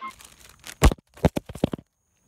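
Handling noise of a camera tipping over and falling: a few faint rustles, then about five sharp knocks and clatters in the second half.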